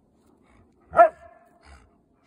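A husky giving one short, sharp bark about a second in, trailing off into a brief held whine.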